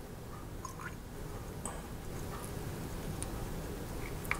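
Milk being poured from a plastic jug into a ceramic mug of Ovaltine mixture: a faint, steady pour that grows slowly louder as the mug fills, with a few small clicks.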